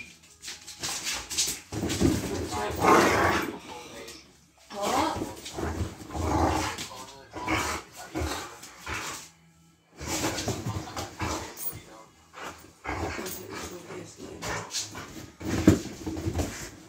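Two dogs play-fighting, making dog vocal noises in irregular bursts with short lulls between them.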